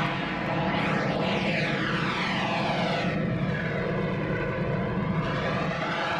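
A steady, loud engine-like drone whose tone sweeps slowly up and down in a swirling, phasing pattern, like an aircraft passing.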